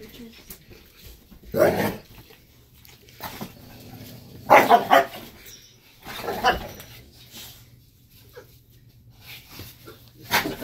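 Cane Corsos barking in a scuffle, the female snapping at the stud male: three short loud outbursts, the loudest and choppiest about halfway through.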